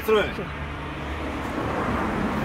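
A motor vehicle engine running close by: a steady low drone that grows slightly louder toward the end, after a brief spoken word at the start.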